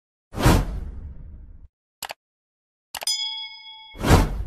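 Outro animation sound effects: a whoosh that fades over about a second, two quick clicks about two seconds in, then a mouse click and a bell-like ding that rings for about a second, and another whoosh at the very end.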